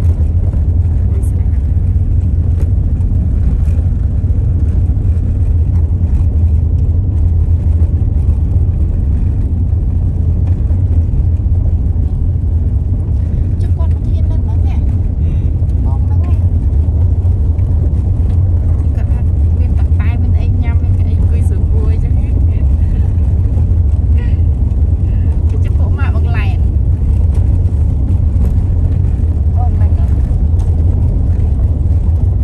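Steady low rumble of a vehicle driving along a rough, dusty unpaved road, the noise even and unbroken, with a few brief higher sounds over it in the second half.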